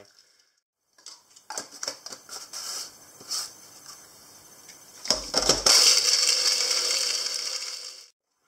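Clicks and knocks of a plastic blender cup and jar being handled for a few seconds, then a compact personal blender switching on about five seconds in and running steadily as it blends a soy-and-fish-sauce marinade, fading out near the end.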